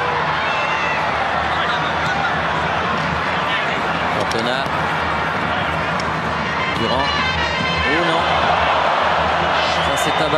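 Football stadium crowd: a dense mass of many voices with scattered shouts, swelling slightly near the end as an attack builds.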